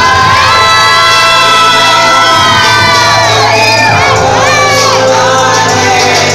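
Audience cheering and shouting loudly, with high drawn-out screams, over dance music playing through the hall's sound system.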